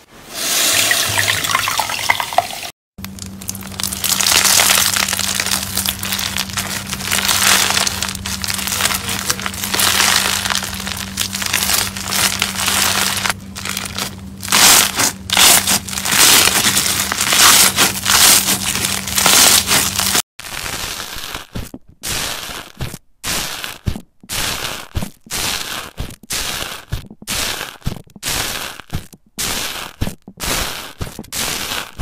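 Slime squeezed and worked by hand: a long run of crunchy crackling from bead-filled slime over a steady low hum. Later it gives way to short separate crunchy crackles, about one or two a second, with brief silences between.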